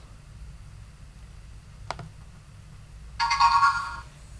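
A single mouse click about two seconds in, then a short electronic chime lasting under a second near the end, sounding as the program download to the LEGO EV3 brick goes through.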